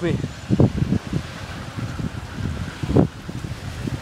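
Wind buffeting the microphone: a steady low rumble that swells in gusts, with two brief stronger surges, one about half a second in and one about three seconds in.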